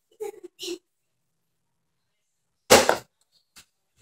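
A foam dart from a Nerf Longshot blaster lands with one sharp smack close by, about three-quarters of the way through, after a near-silent stretch.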